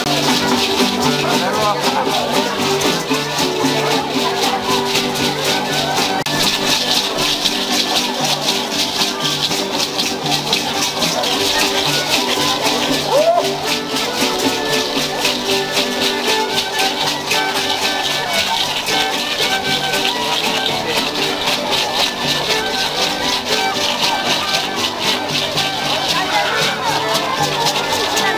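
Violin and guitar playing a dance tune for the arch dancers, with hand rattles shaken in a fast, steady rhythm over it.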